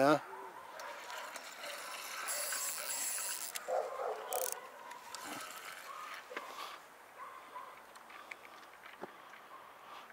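Spinning reel being cranked to wind in line on a hooked fish, a small pike: a light mechanical whirring and clicking, strongest about two to three and a half seconds in.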